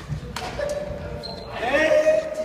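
A sharp crack of a badminton racket striking a shuttlecock, followed near the end by a player's loud call.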